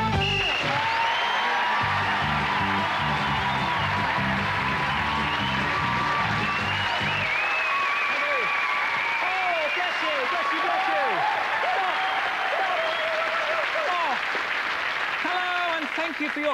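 Studio audience applauding and cheering over the end of the theme tune. The music stops about seven seconds in, and the applause and whoops carry on.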